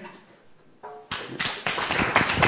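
Audience applause beginning about a second in, many hands clapping and building up quickly.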